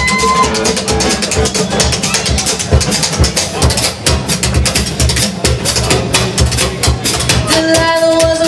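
Live acoustic roots band playing a passage with no singing: a busy, steady percussion rhythm on a box drum and cymbals over guitars and upright bass. A long, steady held note comes in near the end.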